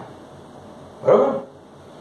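One short vocal call about a second in, its pitch rising then falling, over low room noise.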